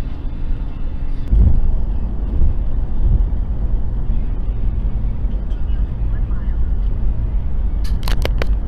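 Steady low rumble of car road and engine noise inside a moving car, picked up by a dashcam. There is a low thump about a second and a half in.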